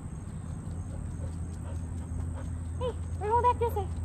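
Steady low outdoor rumble with a faint, steady high tone, then a woman's short exclamations about three seconds in.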